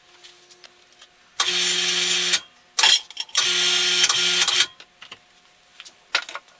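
A small electric motor, like a power tool's, runs in two bursts of about a second each, with a short blip between them, amid light clicks of parts being handled.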